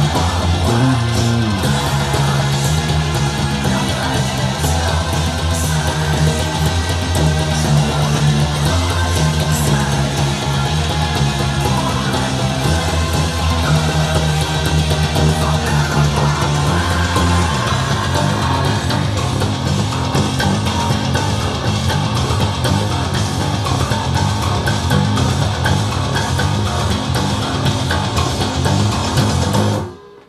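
A Mike Lull T-Bass, a Thunderbird-style electric bass, played hard with the fingers. It runs through fast, continuous sixteenth-note runs of a heavy metal bass line, with each note struck through the string so that it chimes. The low notes change pitch in blocks of a few seconds, and the playing stops abruptly at the end.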